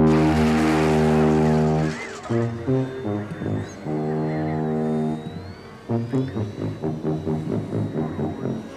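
Film soundtrack: the alien mothership's deep, horn-like musical tones. A long held note, a few short notes, a second long note, then a quicker run of notes.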